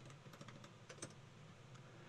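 Faint computer keyboard typing: a few soft, scattered keystrokes, the clearest about a second in.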